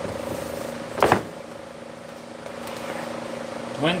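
Steady machine hum in a candy kitchen, with one loud knock about a second in.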